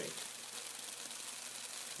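Tesla coil's corona discharge hissing steadily, with a faint low hum, as streamers spray from the sharp points of a spinning aluminium-foil ion motor rotor.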